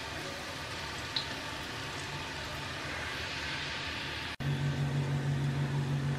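Masala-coated peanuts deep-frying in hot oil in a clay pot, a steady sizzle with one small click about a second in. About four seconds in the sound drops out for an instant and comes back with a steady low hum under the sizzle.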